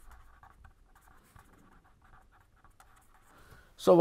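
Pen writing on paper: a faint, quick run of short scratching strokes as a line of handwriting is written.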